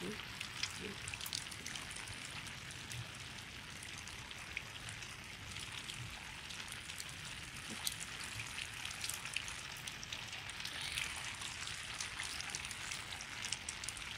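Steady rain falling, with many individual drops ticking sharply close to the microphone.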